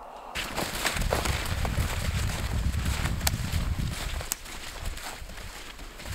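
Footsteps crunching in powdery snow as several hikers walk single file. A heavy low rumble on the microphone is loudest until about four seconds in, with a couple of sharp clicks.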